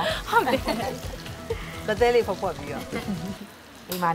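A woman talking over background music, with a pan of food frying faintly underneath.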